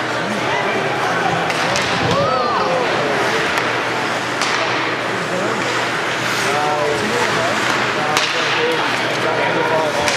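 Hockey arena ambience during play: spectators' overlapping chatter with several sharp knocks of sticks and puck on the ice and boards, the loudest near the end.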